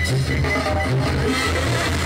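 Live Mexican banda (brass band) playing an upbeat dance tune, with a sousaphone pumping a repeating bass line under the brass.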